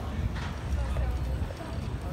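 Busy city pavement sounds: passers-by talking, footsteps on stone paving and a steady low rumble of traffic and wind, with a brief rustle or scrape about half a second in.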